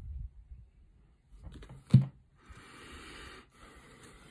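Quiet handling of tarot cards: a short tap just before two seconds in, then a soft hiss about a second long as a card slides.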